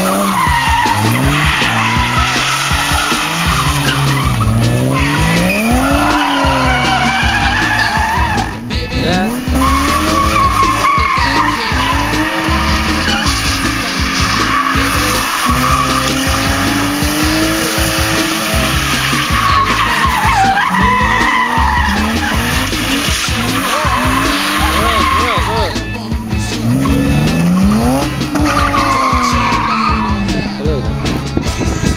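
A car drifting, its engine revving up and falling back again and again as the tyres squeal and skid through repeated slides.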